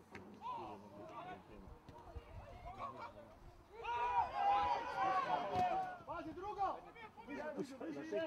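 Footballers shouting and calling to each other on the pitch. The shouting is loudest for about two seconds in the middle.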